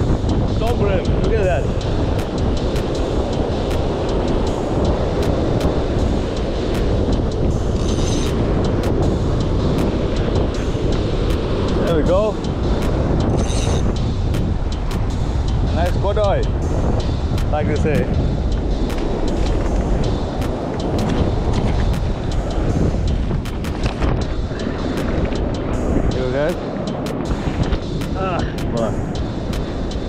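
Wind buffeting the microphone over surf washing across a rock shelf, loud and steady throughout. A few brief gliding tones come and go in the middle and near the end.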